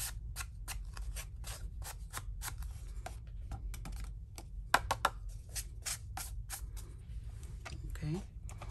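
A sponge brushing loose gold leaf flakes off a paper card: a run of short, scratchy strokes, two or three a second, with a couple of sharper clicks about halfway through.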